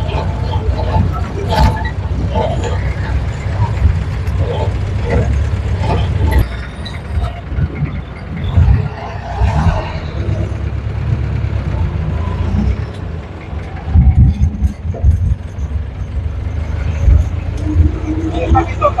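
Motorcycle-tricycle engine running with a low rumble while the vehicle drives along a street, with wind on the microphone and passing road traffic. A few louder knocks and jolts come about two-thirds of the way through.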